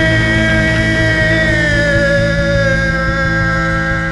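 Rock band holding a sustained chord, electric guitars and bass ringing, under a long held sung note from the lead singer that drifts slowly down in pitch; it is the song's closing chord.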